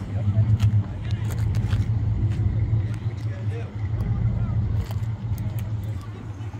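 A car engine idling with a low, steady rumble, with people talking faintly in the background.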